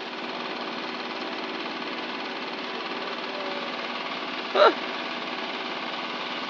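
Engine-driven pump running steadily while pumping out floodwater, a continuous rough motor drone. A brief voice sounds once about four and a half seconds in.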